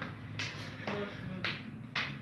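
A man laughing quietly, in a few short breathy bursts about half a second apart.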